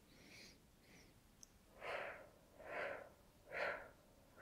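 A woman breathing in short, choppy puffs through pursed lips, a jerky, broken-up breath that shows the opposite of smooth breathing. Two faint puffs come first, then four louder ones in a quick, even series.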